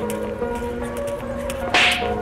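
Background music with one short, loud whoosh near the end, an editing swoosh effect as a new caption comes on screen.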